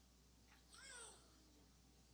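Near silence: room tone, with one faint, brief high cry that bends up and then down in pitch about a second in.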